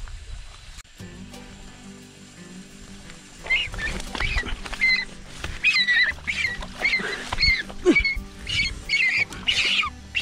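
Domestic goose honking repeatedly in alarm as it is chased through undergrowth and grabbed by hand. The calls start about three and a half seconds in and come quickly, about two a second.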